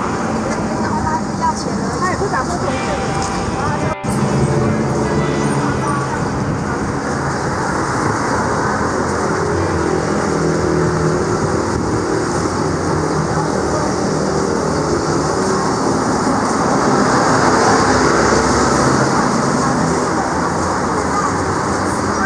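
City street sound of road traffic, cars and a bus passing on a multi-lane road, with voices, heard from the sidewalk. The sound changes abruptly about four seconds in.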